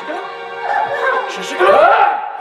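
A woman's high, wailing cries, rising and loudest near the end, over steady background music with long held notes.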